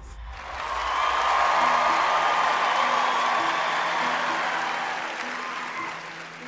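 Audience applause that swells in over the first second or so, holds, then slowly fades, with a soft, slow melody playing underneath.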